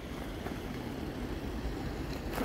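Outdoor wind buffeting a handheld phone's microphone: a steady low rumble with a faint hiss over it.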